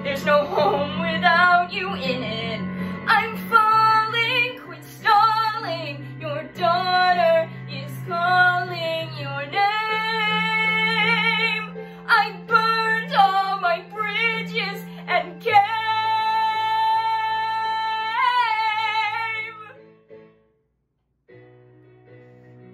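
A young woman singing a musical-theatre ballad over a recorded backing track, ending a phrase on a long held note that wavers near its end and fades out about twenty seconds in. After a brief hush, soft accompaniment comes back in near the end.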